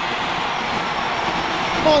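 Basketball arena crowd cheering in a steady roar, the reaction to a slam dunk; a commentator's voice comes in right at the end.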